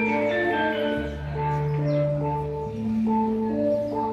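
Modern gamelan music: short struck melody notes over long held bass tones that change about every second and a half.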